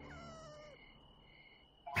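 A frightened cartoon pony's short, faint whimper, falling in pitch, over the fading echo of a loud outburst.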